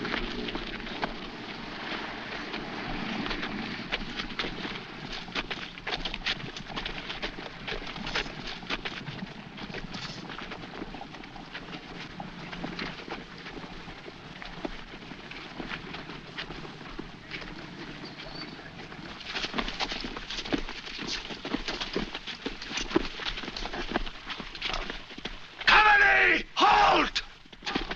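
Many feet marching and shuffling on a dirt road, an irregular patter of steps.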